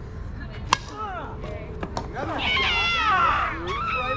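A softball bat hitting the ball with one sharp crack a little under a second in, followed by several voices shouting with high, falling calls, loudest in the second half.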